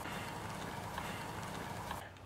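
Steady outdoor background noise, an even hiss with a low rumble and no distinct events.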